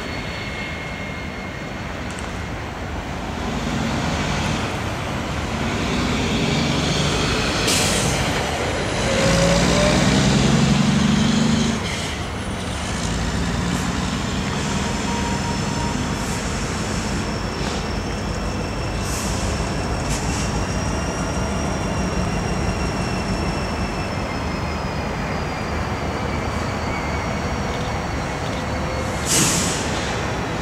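EMD SD70ACe diesel locomotives of a freight train running as they approach, with a low engine drone that swells for several seconds before easing. In the later half there is a thin, steady high squeal, typical of wheels on the rail, and there are a few sharp metallic knocks.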